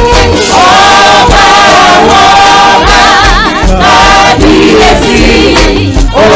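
Gospel praise team singing a worship song in harmony over band accompaniment with a steady bass and drum beat; the voices bend through a wavering run of notes a little past the middle.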